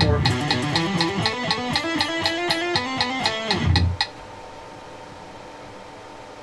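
Electric guitar playing a fast hammer-on exercise, quick legato runs of notes over steady metronome clicks. The playing and the clicks stop about four seconds in, leaving only a faint steady hum.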